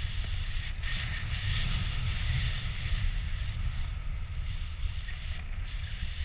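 Steady wind noise on an action camera's microphone from the airflow of a tandem paraglider in flight: a low rumble with a hiss above it.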